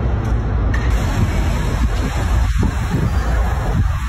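Steady road traffic noise from many cars at a bridge toll plaza, with a heavy low rumble.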